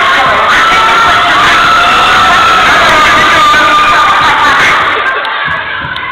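Loud audience cheering and shouting, many young voices at once, dying down about five seconds in.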